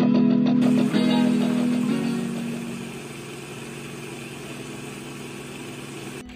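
Countertop blender running, starting about half a second in and churning eggs, banana, oats and protein powder into pancake batter. Guitar background music plays over the first two seconds, then fades, leaving the blender alone.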